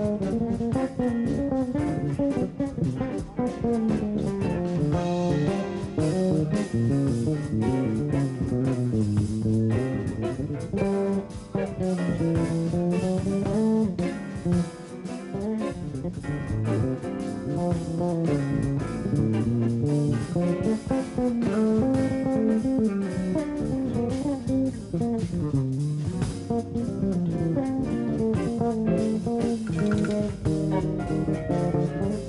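Electric bass guitar solo in a jazz band: a single plucked melodic line moving up and down through the bass and low-mid register, with drums behind it.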